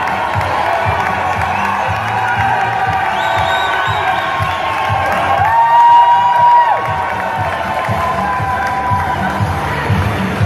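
A crowd in a hall cheering and shouting, with long drawn-out calls rising over the noise. The loudest call is held for about a second, roughly six seconds in.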